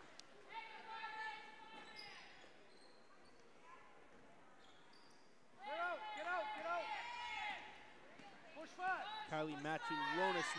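Live basketball play on a hardwood gym floor: a ball bouncing and sneakers squeaking in quick, high pitched chirps. The squeaking thickens about halfway through. Voices carry in the hall near the end.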